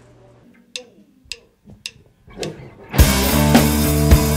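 About three seconds of quiet with a few faint clicks, then a rock band cuts in loud: drum kit hits over sustained chords, with bass guitar.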